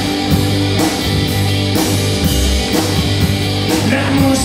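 A live rock band playing an instrumental passage: distorted electric guitar, electric bass and a drum kit keeping a steady beat with cymbal hits about every half second.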